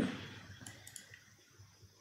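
A few faint clicks of a computer mouse and keyboard being used to copy and paste components.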